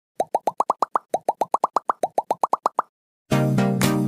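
A cartoon-style bubble-pop sound effect: about eighteen quick rising bloops in three runs, each run stepping up in pitch. Background music starts near the end.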